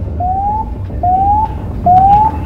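Fire-dispatch alert tone: a short electronic beep rising in pitch, repeated three times about every 0.8 s, the pre-alert that comes before a turnout call to the fire crews. A low steady hum runs underneath.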